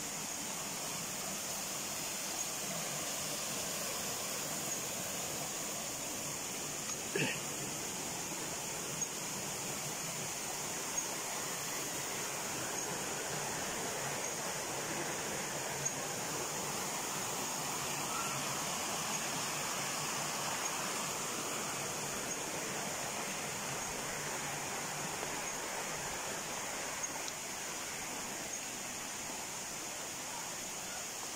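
Steady rush of a stream's flowing water, with a few faint clicks and one brief sharp sound about seven seconds in.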